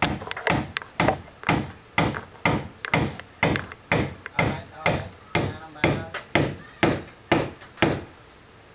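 Repeated hammer blows on wood, a steady run of about two strikes a second.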